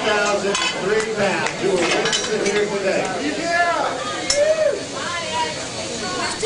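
Overlapping chatter of several people talking at once, with scattered light clinks and knocks.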